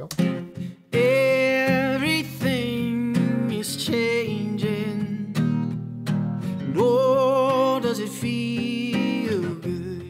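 Playback of a mixed live recording of acoustic guitar and singing, the voice coming in about a second in. A console-emulation plugin on the mix bus is switched off and back on during it, a difference that is extremely subtle.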